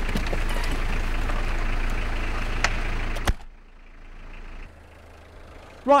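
Peugeot diesel engine idling steadily, heard from inside the cabin just after it was jump-started off another car's battery because its own battery is flat. About three seconds in there is a sharp knock, after which the engine sound is much quieter.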